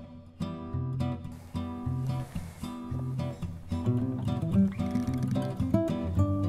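Background acoustic guitar music, a run of plucked and strummed notes.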